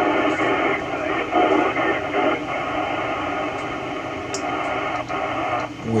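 Icom IC-9700 transceiver's speaker playing the AO-91 FM satellite downlink: a thin, narrow-band hiss of noise with faint voices of other stations coming through it.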